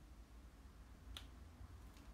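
Near silence: room tone, with one sharp click about a second in and a fainter one near the end.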